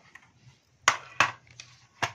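Two sharp taps about a third of a second apart, a second in, with faint rustling, as a paper colouring book is handled.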